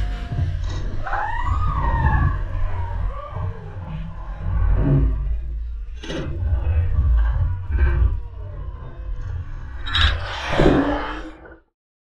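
Water splashing and churning as a great white shark breaks the surface right beside the boat, in several sudden splashes with the largest near the end, over a steady heavy low rumble. A few high wavering calls sound in the first few seconds.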